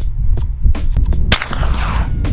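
A single 9mm shot from a Ruger PC Carbine about a second and a half in, sharp and followed by a falling ringing tail, over a steady low throbbing rumble.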